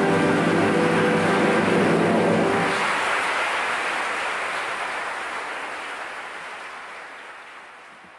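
A theatre orchestra holds the final chord of an operetta's act finale, which ends about two and a half seconds in. Audience applause follows and fades out steadily.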